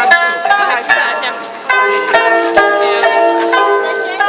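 Live Chinese traditional music on guzheng (Chinese zither) and pipa: a quick run of plucked string notes, some of them bent and sliding in pitch.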